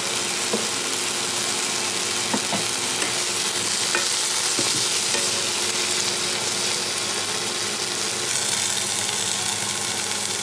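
Broccoli florets sizzling steadily in a nonstick frying pan, with a few light knocks as a wooden spatula stirs them.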